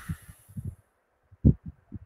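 A few soft, low thumps in near quiet, the loudest about one and a half seconds in.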